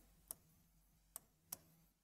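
Near silence with three faint, short clicks: a pen tip tapping against the writing board while a structure is drawn.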